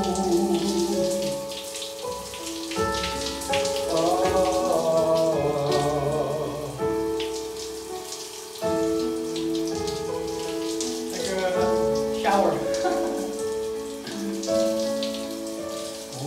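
Running shower water spattering steadily, with music of long held notes sounding underneath.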